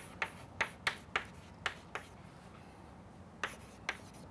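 Chalk on a chalkboard while writing: a run of sharp clicks and taps as the chalk strikes the board for each stroke, with a pause of about a second and a half in the middle before the tapping resumes.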